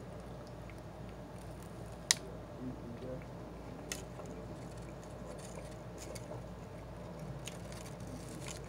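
A person quietly chewing a mouthful of donut topped with shaved chocolate, over a steady low hum. There is a sharp click about two seconds in and a smaller one near four seconds.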